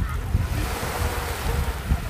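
Small waves washing onto a sandy beach, the rush of surf strongest in the first second and a half, with wind rumbling on the microphone.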